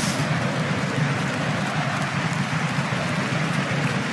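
Loud, steady stadium crowd noise from a football crowd reacting to a shot that goes close.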